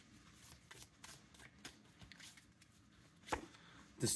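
Tarot cards being shuffled by hand: faint, irregular soft flicks and riffles, with one louder tap about three seconds in.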